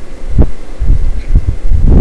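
Microphone handling noise: irregular low thumps and rumble, with one sharper knock about half a second in, as the earbud cable's microphone is brushed by a moving hand and clothing.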